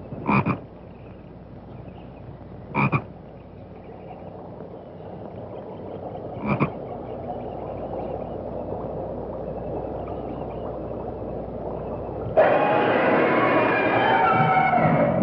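Frogs croaking in a lily pond: three loud croaks a few seconds apart over a hiss that slowly builds. Near the end a sudden loud burst of music breaks in.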